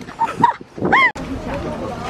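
A person's playful vocal sounds: a couple of short high exclamations, then one high-pitched squeal that rises and falls about a second in. It cuts off suddenly.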